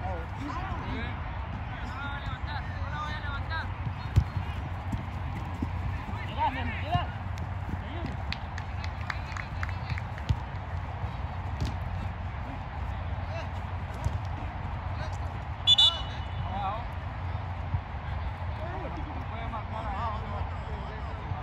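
Soccer match sounds: players' voices calling across the pitch over a steady low rumble, with sharp knocks of the ball being kicked, the loudest about four seconds in. About sixteen seconds in, a short shrill referee's whistle blast, the loudest sound, stopping play for a free kick.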